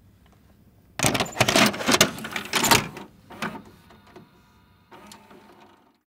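A VCR taking in a videotape and starting playback: loud mechanical clattering and clunks for about two seconds, then a quieter whirring from the tape mechanism, with a click about five seconds in.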